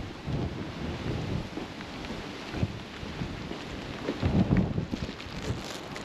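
Strong, gusty wind blowing across the microphone in uneven low gusts, one stronger gust about four seconds in.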